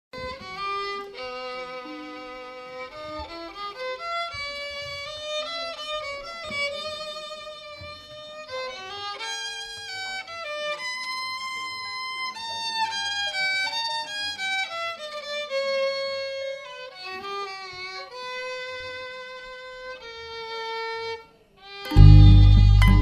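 Background music led by a violin playing a melody of held notes with vibrato; it breaks off just under a second before the end.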